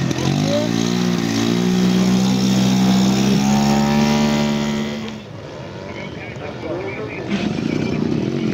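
Engine of a large-scale RC model aircraft revving up, then held at high, steady revs. About five seconds in it gives way to a fainter engine of a model biplane in flight.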